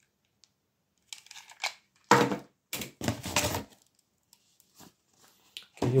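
Handling noise of packaging during an unboxing: a run of short rustles, scrapes and knocks as a cardboard box and plastic wrapping are moved. The loudest knock comes about two seconds in, and a few more follow up to about four seconds in.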